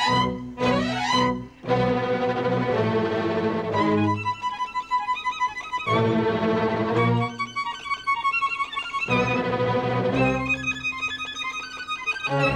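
Solo violin playing a bowed melody over sustained low accompanying notes, with quick rising runs in the first two seconds.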